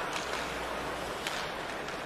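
Ice-hockey arena ambience: steady crowd noise, with two faint sharp clicks about a second apart.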